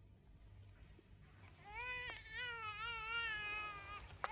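Newborn baby crying: one long, high, wavering wail beginning about a second and a half in, after a faint start.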